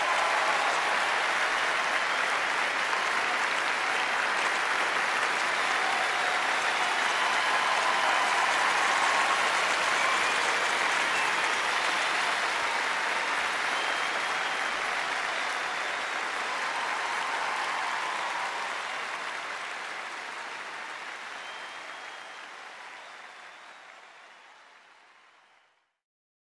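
Large theatre audience applauding: a dense, steady wash of clapping that fades out over the last several seconds.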